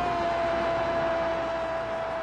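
Football commentator's long, drawn-out goal shout, "Gol!", held on one steady pitch after a brief drop at the start, over a steady rush of stadium crowd noise.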